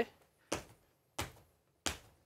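Sneakered feet landing on a wooden studio floor during continuous double-leg hops: three short thuds, evenly spaced about two-thirds of a second apart.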